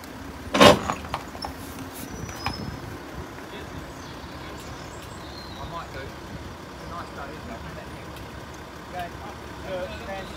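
Steady outdoor street noise with faint distant voices, broken by one short loud knock less than a second in.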